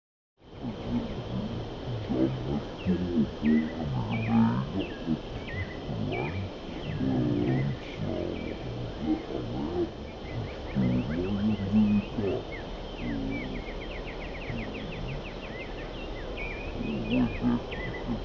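Indistinct low voices talking, with small birds chirping and trilling throughout and a steady low wind rumble underneath; the sound begins about half a second in.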